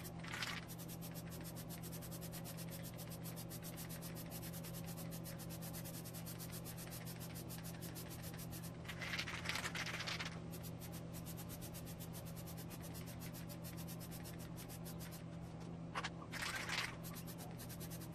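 Plasti Dip aerosol spray can hissing in short bursts as rubber coating is sprayed onto wheel rims: a brief spurt at the start, a longer one of about a second midway, and two quick spurts near the end, over a steady low hum.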